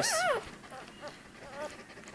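Newborn Australian Labradoodle puppy giving a high, wavering squeal that falls in pitch and dies away within the first half-second, followed by a couple of faint squeaks.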